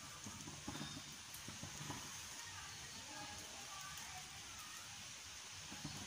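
Faint sizzling of bread slices toasting on a greased flat griddle, with soft scattered taps as the slices are laid down on the pan.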